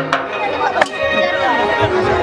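Ongoing devotional chanting or music with sustained held notes, cut by three sharp knocks: two close together right at the start and a louder one a little before the middle.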